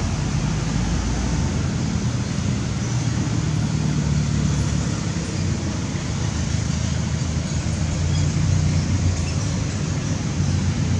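Steady low rumble with a hiss over it, unchanging throughout, with no distinct calls or knocks.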